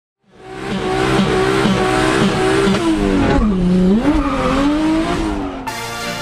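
A car at full throttle with tyres squealing: a high engine note that holds, drops about halfway and climbs again. It fades in at the start and cuts off just before the end, where music begins.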